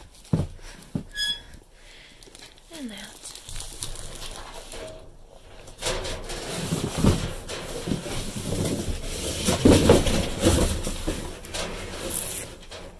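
Gloved hands rummaging through cardboard boxes and plastic produce bags in a dumpster: a couple of knocks at the start, then continuous rustling and crinkling from about halfway through, loudest near the end.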